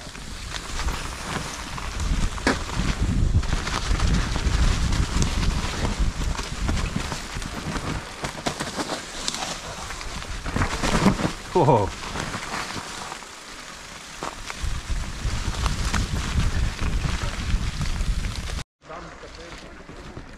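Mountain bike riding noise: tyres rolling over a leaf-strewn dirt trail with the bike rattling over the ground and a low rumble of wind on the camera microphone. The sound cuts out abruptly for a moment near the end, then resumes quieter.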